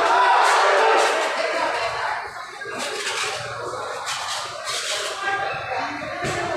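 Overlapping voices of a ringside crowd talking and calling out, echoing in a large hall, loudest in the first second, with a few sharp knocks later.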